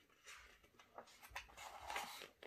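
Mostly quiet, with a few small clicks and then the soft rustle of a picture book's paper page being turned, building in the second half.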